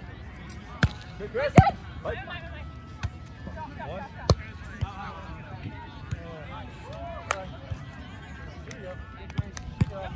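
A volleyball struck by players' hands and forearms during a rally on grass: a series of about six sharp slaps at uneven intervals, the loudest about one and a half seconds in, with players' shouts and calls between the hits.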